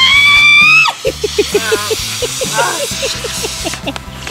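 A loud, high-pitched scream lasting about a second, then background music with a run of short repeated notes.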